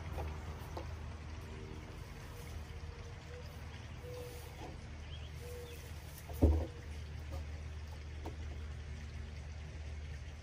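Hands working a brass spigot fitting into a hollow plastic barrel: a few faint clicks and one sharp knock about six and a half seconds in, over a steady low hum.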